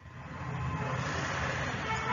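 Steady low background rumble with no speech, cutting out for an instant at the start and then fading back in.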